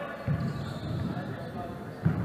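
Basketball being dribbled on a wooden gym floor, several bounces in a row, the loudest about a third of a second in.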